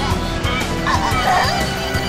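Background music under a few short, high, yelping cries from cartoon minion creatures, about halfway through.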